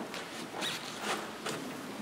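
Irregular rustling and shuffling: a few soft brushing strokes, about two a second, like handling of cloth or paper.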